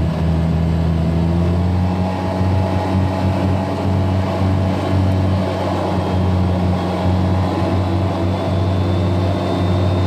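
Polaris RZR side-by-side driving along a paved road: its engine and drivetrain run with a steady low drone. A faint high whine comes in about seven seconds in and rises slightly.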